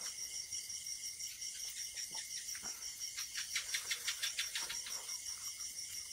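Crickets chirping steadily in a fast, even pulse. Over them come wet, clicky eating sounds of curry and rice being eaten by hand, thickest and loudest in a burst between about three and five seconds in.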